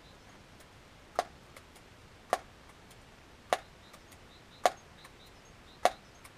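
Daisy PowerLine 901 multi-pump air rifle being pumped: five sharp clacks about a second apart, each stroke followed by a softer click.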